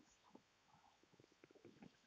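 Faint rubbing of a duster wiping a whiteboard, a quick run of short strokes in the second half.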